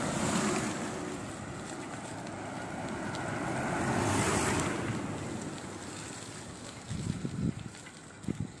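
Wind rushing over the microphone of a camera carried on a moving bicycle, a steady noisy rush that swells and fades about four seconds in. A few low thumps come near the end.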